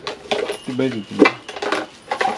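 Hard plastic kitchen containers and lids clattering and knocking together as they are handled, with a string of sharp clicks and one louder knock a little after a second in.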